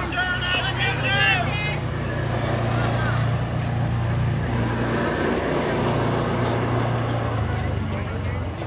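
Voices calling out around a ballfield in the first second or two, over a steady low rumble that carries on through the rest.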